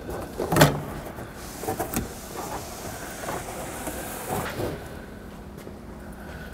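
A minivan's fibreboard headliner being worked down and out of the cabin: rustling and scraping against the roof and trim, with a few knocks, the loudest about half a second in.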